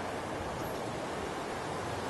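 Steady wind noise: an even rush with no distinct events.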